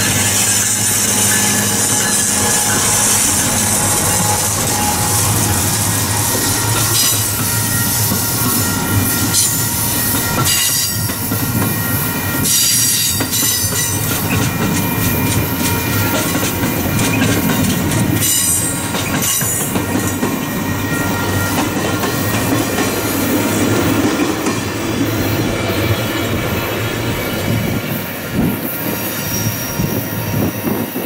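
Amtrak passenger train led by a Siemens SC-44 Charger diesel locomotive rolling past close by: the locomotive at first, then a run of single-level coaches with loud, steady wheel-on-rail noise. Clusters of clicking come through as the wheels cross rail joints, and the sound eases slightly near the end as the train moves away.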